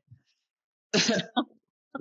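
A person clearing their throat about a second in: a short rasping burst followed by a smaller one.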